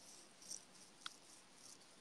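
Near silence: faint room tone, with two tiny ticks, one about half a second in and one about a second in.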